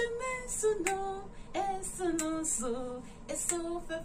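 A woman singing a hymn solo and unaccompanied, a slow melody of held notes.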